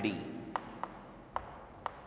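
Chalk writing on a chalkboard: four short, sharp ticks of the chalk striking the board.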